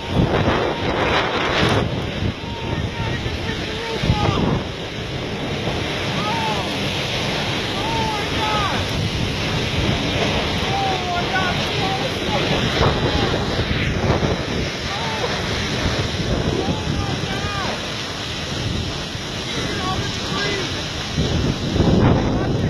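Tornado wind rushing loudly and steadily, buffeting the microphone, with faint short squeals scattered through it.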